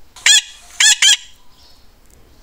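A bird calling three times in short, loud, high-pitched calls, the last two close together.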